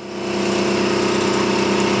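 Paint spray gun running while spraying a speckled wall-paint finish: a steady machine hum with an even hiss of spray, building up over the first half second and then holding steady.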